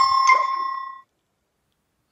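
Heads Up! phone game's correct-answer chime: a bright ding that rings and fades out by about a second in, marking a correct guess.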